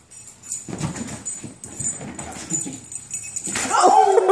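Small dog whining near the end, one falling cry, as it goes after a toy dangled on a fishing line.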